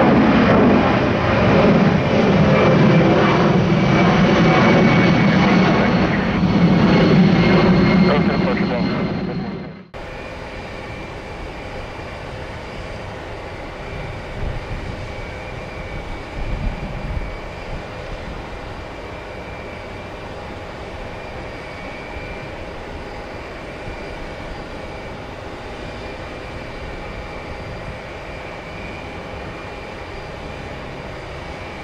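A Boeing 757's twin jet engines at climb power as it climbs out overhead after takeoff: a loud, steady roar with a faint high whine, cut off abruptly about ten seconds in. After that there is a much quieter steady background with a few low gusts of wind buffeting the microphone.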